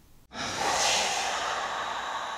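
Near silence, then about a third of a second in a steady rushing outdoor background noise cuts in abruptly and holds at an even level.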